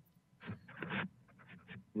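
A faint, indistinct human voice over a video-call audio line about half a second in, followed by a few light clicks.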